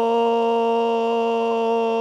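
A single long scream held on one steady pitch, unbroken.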